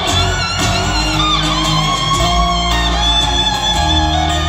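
Live acoustic string band playing an instrumental passage with no singing: guitar strumming leads, over upright bass and fiddle.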